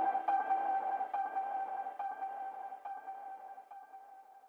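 Closing bars of ambient electronic background music: a single held synth tone with a soft tick repeating about once a second, fading out.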